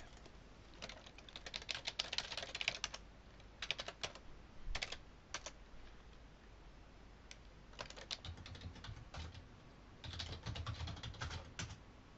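Computer keyboard typing, faint, in four short bursts of rapid key clicks separated by pauses.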